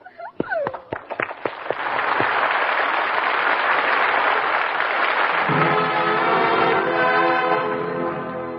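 Studio audience laughter on an old radio broadcast recording, swelling from scattered laughs into a long sustained wave of laughter and applause after a gag. About five and a half seconds in, music with held chords comes in under it.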